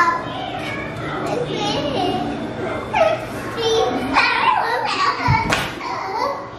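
Two young children vocalising while they play, with wordless cries and squeals that rise in pitch. A heavy thump comes about five seconds in, typical of a child dropping onto a wooden floor.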